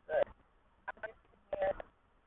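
A woman's voice speaking in three short bursts, with a thin, telephone-like sound.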